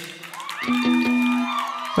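A band instrument on stage holds one steady note starting about half a second in, over light crowd cheering and whoops.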